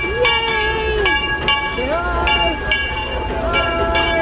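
Steam locomotive's bell ringing steadily, struck about twice a second, as the Disneyland Railroad engine Ernest S. Marsh pulls into the station. Voices are heard over it.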